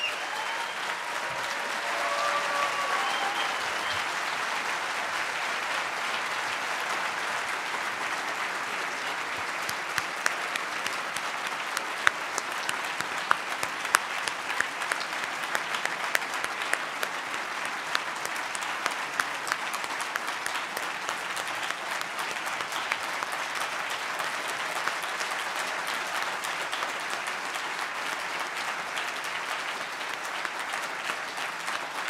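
Large audience applauding steadily at length, with a few voices calling out in the first seconds and sharper single claps standing out from about ten seconds in.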